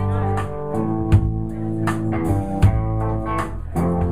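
Live rock band playing an instrumental passage with no singing: electric guitars and bass hold ringing chords over drums. Sharp drum hits come about every second and a half.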